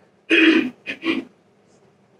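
A woman clearing her throat and coughing into a microphone: one loud burst, then two short ones.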